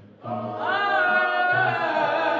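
Mixed-voice gospel choir singing together; after a short break just at the start, the voices come back in on a held chord.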